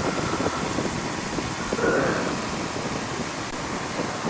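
Cockpit noise of a Piper J-3 Cub in flight: its 65-horsepower Continental A-65 four-cylinder engine and propeller running steadily under the rush of wind past the cabin, with carburetor heat just applied for the approach.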